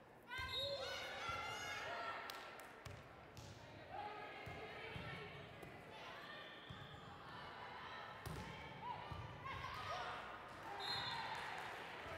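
Volleyball rally in a large, echoing gym: high-pitched shouts and calls from players and spectators overlap throughout, loudest from about a third of a second in and again near the end, with the sharp slaps of the ball being hit.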